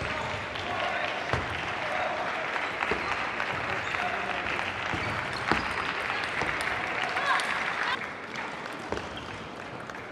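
Applause and clapping in a sports hall with voices mixed in, dying down about eight seconds in. A few sharp clicks stand out from it.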